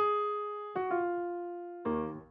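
Software piano playing back a slow dark melody, one note at a time. Three notes, each struck and left to fade: the first at the start, a lower one under a second later, and another near the end.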